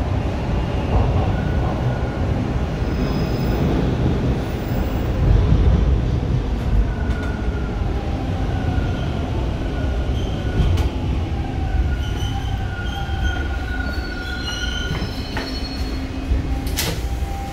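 Toronto TTC T1 subway car rumbling along the rails as it pulls into a station and brakes to a stop, heard from inside the car. Thin high whining tones from the running gear come and go over the second half as it slows.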